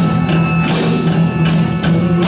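Punk rock band playing live: electric guitars and a drum kit, with cymbal and snare hits on a steady beat, about two to three a second.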